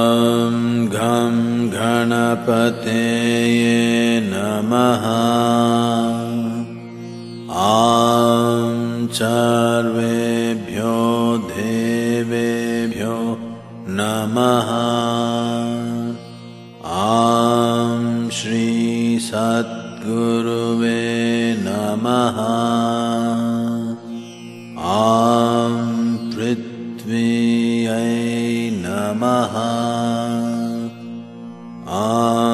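A solo voice chanting a devotional mantra in long, melismatic phrases, four of them each about seven seconds long, over a steady low drone.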